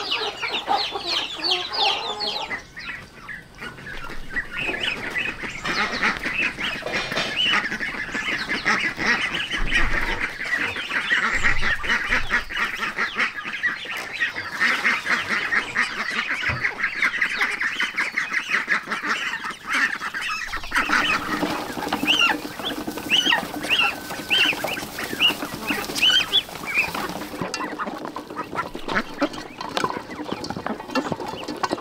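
Chickens clucking for the first two or three seconds, then a flock of domestic ducks calling all at once in a dense, unbroken chorus as they crowd round for feed.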